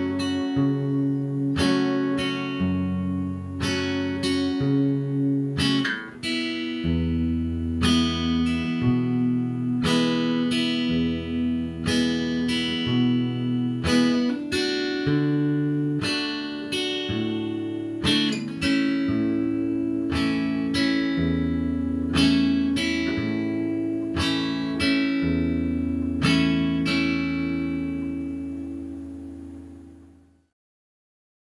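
Acoustic guitar strummed slowly with even down-strums, the chords changing every few seconds through F sharp minor, D and A. The last chord rings out and fades away near the end.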